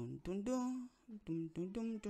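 A man's voice humming quietly under his breath in short held notes, without words.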